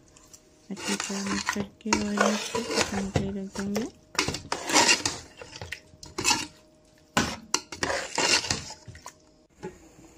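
A metal spoon stirring and scraping against the inside of a steel cooking pot of mutton chops in a yogurt and tomato masala, with repeated clinks and scrapes in bursts.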